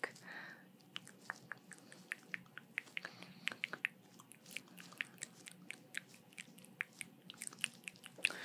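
Close-miked ASMR trigger sounds: quiet, irregular small clicks and ticks, several a second, over a faint steady low hum.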